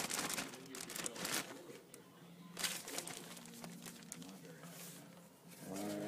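Clear plastic bag crinkling and rustling in bursts as raw chicken is handled inside it with flour batter mix.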